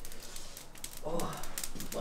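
Calçots charring over a charcoal barbecue fire, crackling in a fast, irregular run of sharp small clicks.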